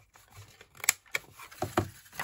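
A handheld xCut corner rounder punch snapping through the corner of a sheet of designer paper: one sharp snap about a second in, then a smaller click and a few softer knocks as the punch and paper are handled.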